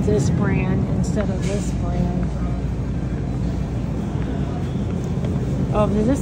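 Steady low hum of supermarket refrigerated display cases, with a voice speaking briefly in the first second or so.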